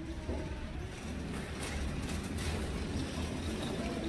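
Steady low background rumble with a few faint clicks, without speech.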